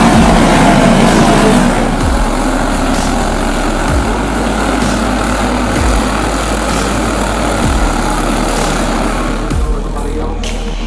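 A pack of racing kart engines running flat out past the track, loudest for the first couple of seconds and then easing. Background music carries a deep bass beat about every two seconds.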